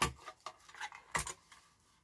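A small plastic paper trimmer set down on a cutting mat with a sharp knock, then a second click a little over a second later as its cutting arm is lifted, with light handling rustle between them.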